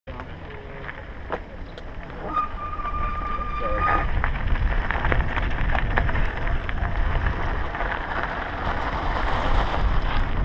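Mountain bike rolling down a gravel trail: wind buffeting the helmet-mounted microphone, with tyres crunching and the bike rattling, getting louder after about two seconds as it picks up speed. A steady high tone sounds for about two seconds near the start.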